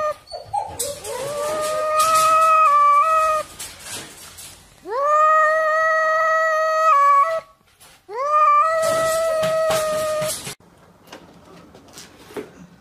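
Dog howling: three long, steady howls, each rising in pitch at its start, with short pauses between them.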